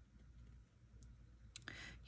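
Near silence, with a few faint clicks from fingers handling washi tape on a paper planner page: one about halfway through and a small cluster near the end.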